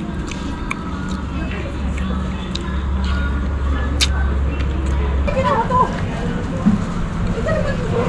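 Open-air restaurant ambience: a low steady hum for the first five seconds or so that stops suddenly, with scattered sharp clicks, then background voices.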